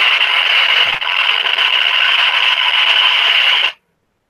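Acoustimeter RF meter's speaker giving a loud, steady hissing buzz that cuts off suddenly near the end. It is the meter's audible rendering of a Wi-Fi signal, reading at its maximum of six volts per meter.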